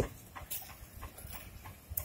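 Faint rumble of quad roller-skate wheels rolling over rough concrete, with a couple of light clicks.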